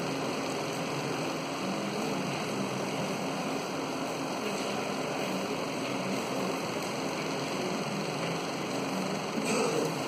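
Steady hiss and hum of room noise from an electric fan, with faint taps of chalk writing on a blackboard.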